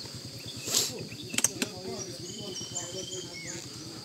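Quiet outdoor ambience: faint distant voices, a few high chirps and one short steady high trill from insects, with a brief hiss and a couple of light clicks early on.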